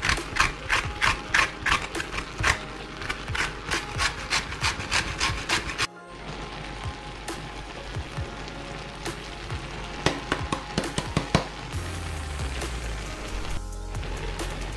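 Lemon rind being grated on a metal box grater: quick rasping strokes, about three or four a second, that stop abruptly about six seconds in. After that only a few scattered light clicks are heard.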